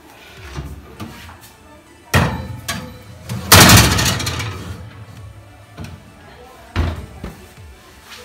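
A metal cake pan going into a domestic oven: a knock about two seconds in, a loud metallic clatter around three and a half seconds as the pan goes onto the wire oven rack, and a thud near seven seconds as the oven door shuts.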